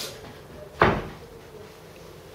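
A single dull thump a little under a second in, dying away quickly.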